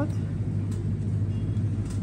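Metal shopping cart rolling across a store floor: a steady low rumble with a few faint rattles.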